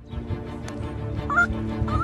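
Background music with sustained low notes, over which a chicken gives two short clucks, one past the middle and one near the end.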